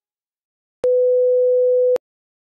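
A single steady electronic beep, one pure mid-pitched tone, starting abruptly with a click a little under a second in and cutting off sharply with a click about a second later, after dead silence.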